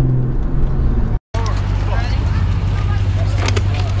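Steady low drone of a car engine heard from inside a moving car, which cuts off abruptly about a second in. It is followed by a steady low engine rumble with voices talking and scattered clicks.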